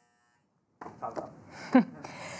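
A silent gap lasting under a second, then the hum of a live event hall with a few brief voice sounds from the room.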